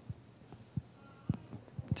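Four soft, low thumps spread over about two seconds, with faint room tone between them.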